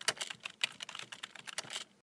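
Computer keyboard typing sound effect: a quick, irregular run of key clicks that stops shortly before the end.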